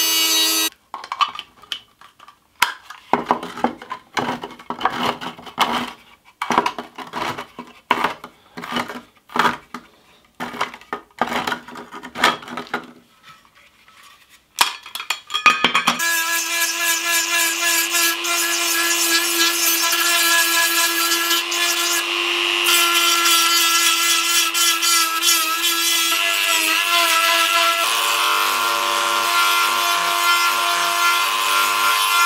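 Dremel rotary tool working a steel beer can. After a short whine at the start, there are about fifteen seconds of irregular rasping and scraping bursts with gaps. From about halfway the tool runs steadily, its bit grinding the cut edges of the can, with the pitch wavering slightly as it bears on the metal.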